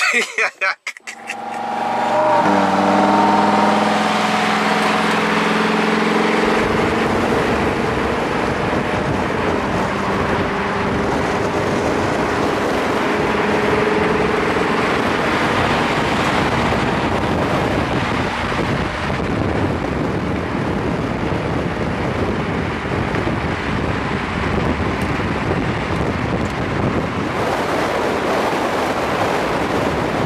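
Lamborghini Huracán's V10 engine running as the car drives along at steady speed. The engine's tones stand out for a few seconds near the start, then are mostly covered by a steady rush of road and wind noise.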